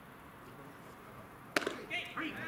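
A baseball smacking into a catcher's mitt: one sharp pop about one and a half seconds in.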